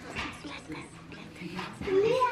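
Puppy eating from a stainless steel bowl, a quick run of short eating noises several times a second.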